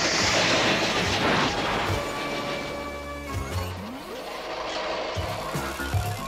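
Cartoon crash sound effect, a loud noisy smash lasting about a second and a half as a flying figure hits the ground, then background music with held notes.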